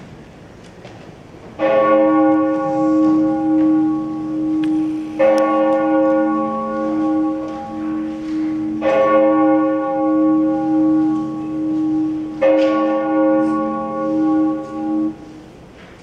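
A large bell tolling four slow strokes, about three and a half seconds apart. Each stroke rings on until the next, and the last is cut off suddenly. It is a sound cue played over the theatre's speakers during the play.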